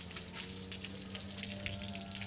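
Water from a garden hose spraying and splashing: a steady spatter of drops onto wet paving and a child's hands held in the stream.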